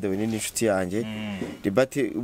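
Speech: a person talking in an interview, with a drawn-out syllable held about a second in.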